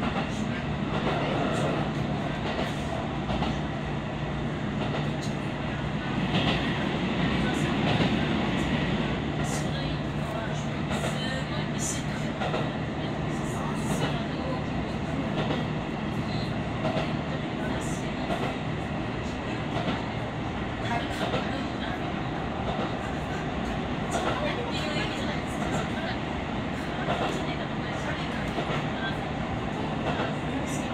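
Diesel railcar running along the JR Takayama Main Line, heard from inside the car near the front: a steady engine hum and running noise, with wheels clicking over the rail joints now and then.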